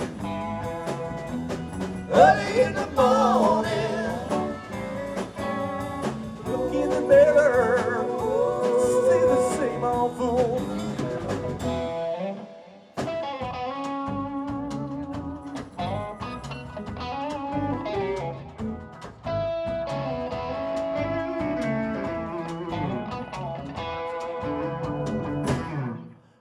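Live blues band playing an instrumental passage: electric guitars with bending lead notes over drums, with a short dip in the sound about halfway through.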